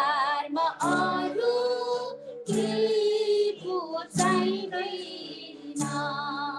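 A woman singing a devotional song in phrases with a wavering vibrato, breaking briefly between phrases, heard through a video call's audio.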